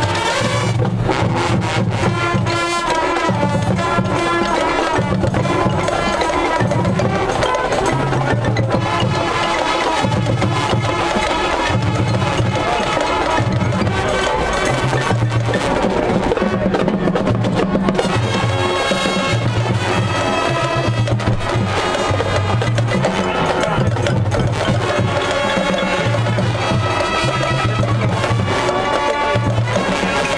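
Marching band playing brass, woodwinds and drumline together, with a low pulse of bass notes coming and going throughout and sharp percussion strokes.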